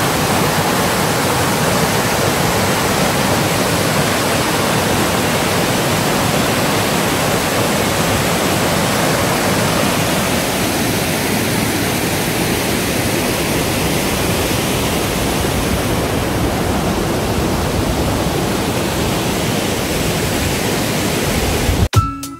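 Mountain stream cascading over boulders: a loud, steady rush of white water, its tone shifting slightly about ten seconds in.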